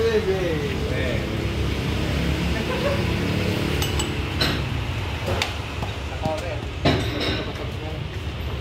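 A handful of sharp metal clinks and knocks in the second half, over a steady low hum of workshop and street noise, with background voices early on.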